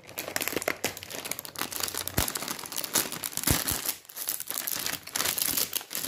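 Plastic snack packet of Fun Scoops crinkling and crackling as it is pulled and torn open by hand, resisting being opened. Two dull knocks come about two and three and a half seconds in.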